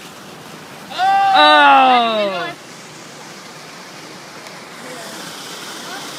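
A person's drawn-out vocal exclamation, about a second and a half long, sliding down in pitch, over a steady rush of water from the mini-golf course's waterfall.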